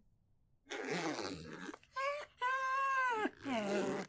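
A jacket rustling as it is zipped up, then a small dog whining in several drawn-out, even-pitched whines.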